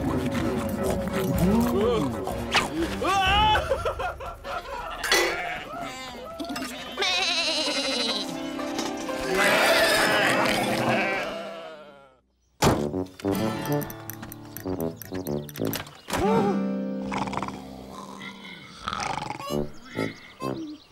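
Cartoon soundtrack of music and wordless character voices, with sheep bleating. The sound drops out abruptly about twelve seconds in, then music resumes with mumbled nonsense speech.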